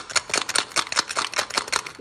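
Handmade fabric clown rattle with a small plastic Yakult bottle inside being shaken, giving a rapid clicking rattle of about ten clicks a second.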